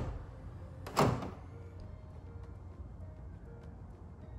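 An interior door being opened, with one short knock or latch clunk about a second in. Faint background music underneath.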